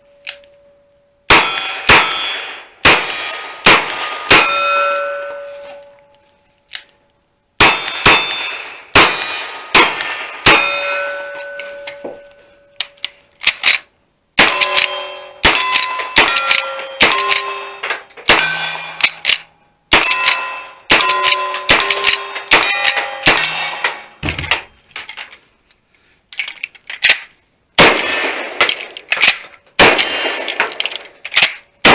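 A string of gunshots from cowboy action guns aimed at steel targets, including a lever-action rifle, about one shot a second with a few short pauses. Most shots are followed by the ringing clang of a hit steel plate.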